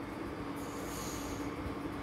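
Steady background hum holding one low tone over faint hiss, with a brief high hiss about half a second in.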